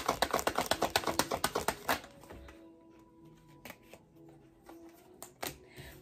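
Tarot deck being shuffled by hand: a rapid run of card clicks for about the first two seconds, then a few single taps as cards are handled.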